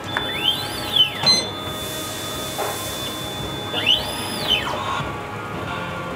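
Automatic crepe machine's motor driving the batter-spreading arm: a whine that rises in pitch and falls away twice as the arm spreads batter over the griddle, with a steady high tone in between. Music plays underneath.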